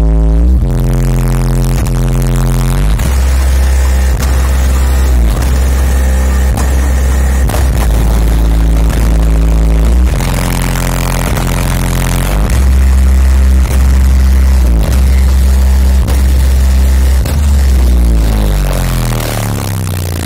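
Bass-heavy music played very loud through a car audio system of twelve 38 cm Hertz SPL Show subwoofers, heard from outside the van. Deep bass notes are held and change every second or two, dominating the sound.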